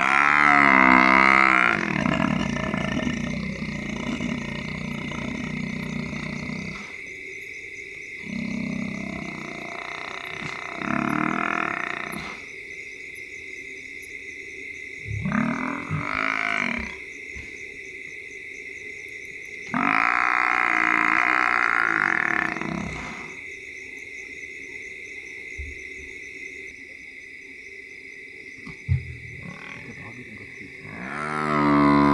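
A mortally wounded Cape buffalo bull bellowing in distress: about five long, low calls, the longest at the start and another about 20 seconds in. A steady chorus of frogs and insects runs underneath.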